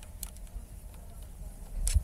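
Small metal clicks as a bolt is threaded by hand into a handlebar phone-mount clamp: a faint click early and a sharper one near the end, over a low rumble.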